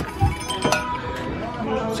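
A door latch clicking twice as the door is pulled open, with a light metallic clink, over background music.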